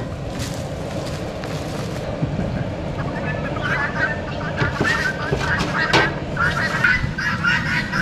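Farm fowl calling: a busy run of short honking calls that starts a few seconds in, over a steady low background noise.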